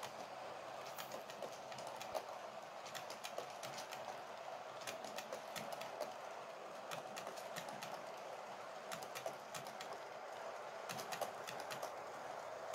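Hornby TT120 Class 08 model shunter hauling eight coaches along the track: a faint, steady running hum with light, irregular clicking of the wheels on the rails.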